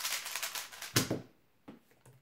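YuXin Kylin V2 M magnetic 3x3 speedcube being turned quickly by hand: a rapid clicking clatter of plastic layers, ending with one sharp knock about a second in, followed by a couple of faint clicks.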